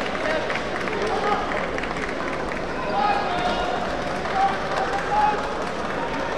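Kendo hall sound: drawn-out kiai shouts from fencers and scattered sharp clacks of bamboo shinai and footwork on the wooden floor, over a steady hubbub of the hall.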